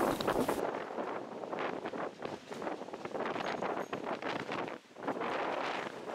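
Wind blowing in gusts across the microphone, surging and easing, with a brief drop about five seconds in.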